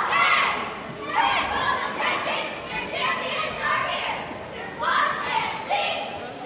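A team of young girl cheerleaders shouting a cheer together, high-pitched shouted words coming about once a second.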